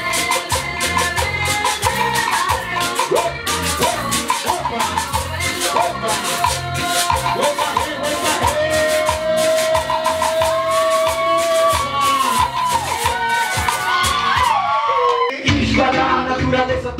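Live cumbia-style hip hop band playing: fast maraca rattling over drums and a pulsing bass, with a melodic line that holds one long note midway and slides in pitch near the end. Just before the end the bass and drums drop out for a moment.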